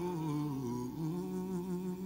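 Solo male voice singing softly into a microphone, sliding down through a few notes and then holding one long low note near the end.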